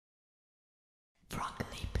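Silence, then about a second in a whispered voice speaking the studio name of a logo ident, cut by a few short sharp clicks.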